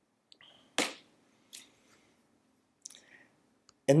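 A mostly quiet pause in a small room, broken by a few brief faint clicks, the sharpest about a second in. A man's voice starts just at the end.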